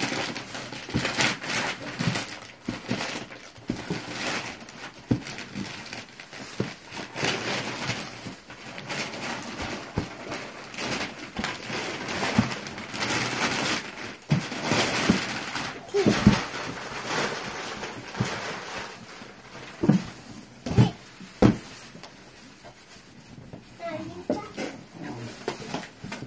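Gift wrapping paper tearing and crinkling as it is pulled off a cardboard box, with a few louder thumps of the box being handled.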